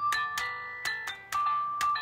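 Barala Fairies toy magic wand in instrument mode, tapped by hand so it plays electronic bell-like notes: about five notes of different pitches, each starting with a click, at uneven spacing.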